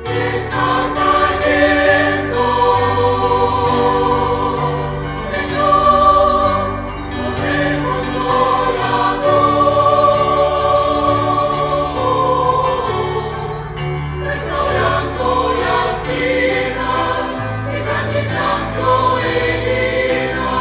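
Background choral music: a choir singing slow, long-held notes over a steady bass.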